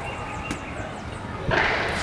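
Inline skates landing a 180-degree jump on smooth concrete: a sudden impact with a short scrape of the wheels about a second and a half in, the loudest sound.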